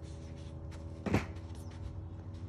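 A single sharp knock about a second in, over a steady low hum.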